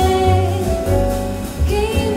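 Live jazz ensemble: a woman sings long held notes over piano, guitar, upright bass and drums.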